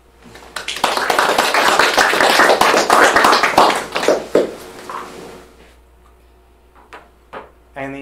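An audience applauding: clapping starts about a second in, holds for about three seconds and dies away.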